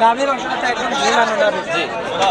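Only speech: people talking, with overlapping voices of chatter.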